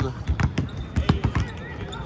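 Several basketballs being dribbled on a hardwood court, an uneven patter of bounces from more than one ball at once, with faint voices behind.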